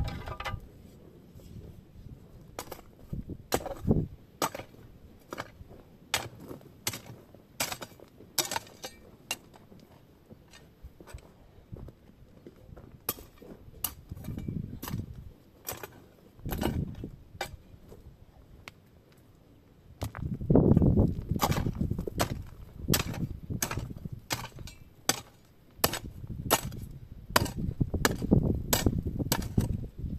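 A metal spade working stony soil: irregular sharp clicks and knocks of the blade and stones striking each other, with heavier scraping and thudding bursts of earth being moved around the middle and toward the end.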